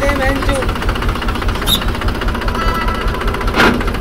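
Mahindra 265 DI tractor's three-cylinder diesel engine idling with a steady, rapid beat. A single short, sharp sound comes about three and a half seconds in.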